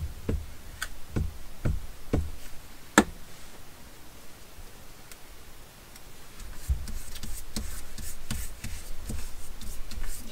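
Glue stick rubbed over a paper book page on a wooden table, giving soft knocks about twice a second, with one sharp click about three seconds in. Later, paper rustling and rubbing as a cutout is laid down and pressed flat by hand.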